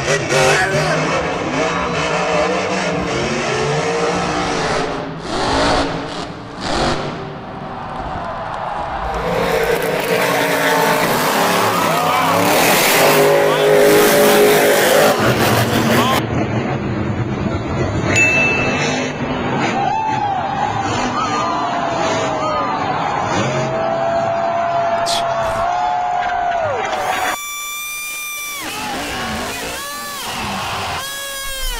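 Monster truck engines (supercharged V8s) revving, their pitch rising and falling as the trucks jump and land, over arena crowd noise with a voice talking over it.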